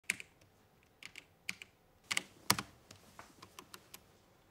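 Typing on a backlit computer keyboard: irregular keystroke clicks in small clusters, the loudest about two and a half seconds in, then lighter, quicker taps near the end.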